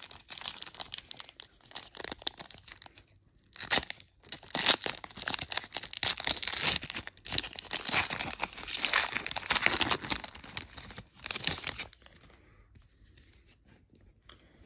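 Foil wrapper of a Panini Chronicles trading-card pack being torn open and crinkled by hand, crackling in uneven bursts with a short pause a few seconds in. It goes quiet about two seconds before the end, as the cards come out.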